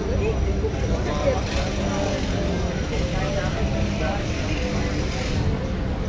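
City street ambience: a steady low rumble of traffic with indistinct conversation from people seated at a café terrace.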